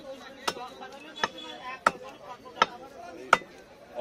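Cleaver chopping a catla fish on a wooden log chopping block: five sharp strikes, about one every three-quarters of a second.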